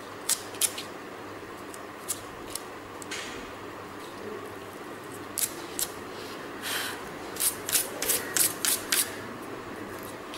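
Scissors snipping through thin dry broom-stick slivers: sharp single snips spaced out, then a quick run of about seven snips in the last few seconds, with a couple of brief scraping sounds in between.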